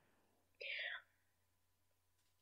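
Near silence, broken a little over half a second in by one brief, soft sound from a person's voice.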